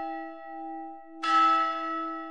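A bell ringing with a steady, slowly fading tone, struck again about a second in.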